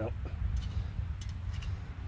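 Wind rumbling on the microphone, with a few faint ticks of handling.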